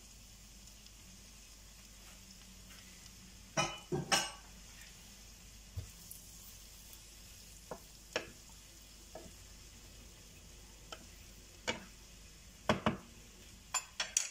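Wooden spatula stirring and tossing udon noodles and prawns in a nonstick frying pan over a faint steady sizzle, with scattered sharp knocks of the spatula against the pan, the loudest about four seconds in and again near the end.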